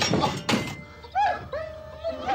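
Hanging saws clattering with a sharp knock about half a second in, then a dog whimpering in a run of short whines that rise and fall in pitch.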